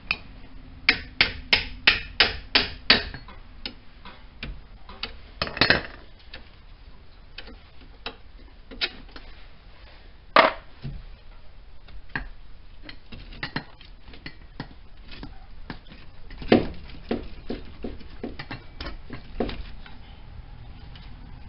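Sharp metal knocks and clanks from a car's front suspension as a broken strut assembly is worked free of the steering knuckle. A quick, even run of about eight strikes comes about a second in, then single louder clanks, and a cluster of knocks and taps near the end.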